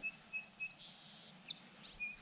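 A small songbird chirping: a quick series of short, high chirps and whistles, with a brief buzzy note about a second in.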